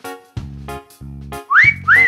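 Bouncy background music with a wolf-whistle sound effect about a second and a half in: a quick rising whistle, then one that rises and falls.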